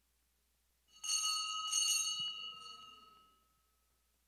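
Small altar bell struck twice, about a second apart, ringing clearly and fading out: the bell that marks the elevation of the consecrated host at Mass.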